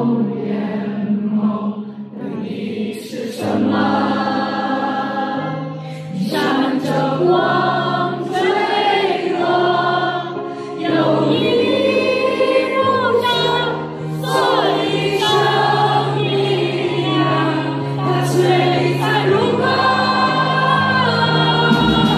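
Live band performance of a slow song: sung vocals over long held keyboard chords and low bass notes.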